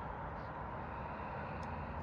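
Steady outdoor background noise: an even, low rumble and hiss with no distinct events.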